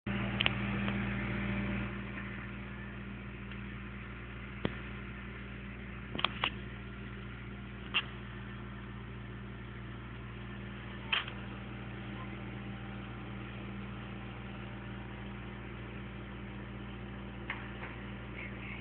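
Steady low drone of a car heard from inside the cabin, with a few short clicks scattered through it.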